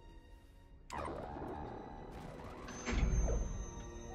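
Dramatic film soundtrack: music starts with a sudden hit about a second in and builds to a loud, deep boom about three seconds in, with a thin high tone held above it.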